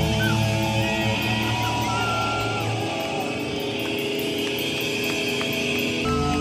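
Live hardcore punk band with electric guitars, bass and drums. The bass and drums thin out and drop away a few seconds in, leaving sustained and sliding electric-guitar tones and feedback ringing on.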